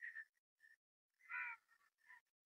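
Faint, short bird calls, several in a row, the loudest about a second and a half in.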